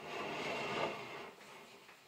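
Handling noise as an old glass oil lamp is moved across a wooden table: a soft rustling scrape that fades after about a second, with a faint click.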